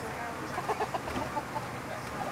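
Steady road noise inside a moving vehicle, with a run of short voice-like sounds about half a second to a second and a half in.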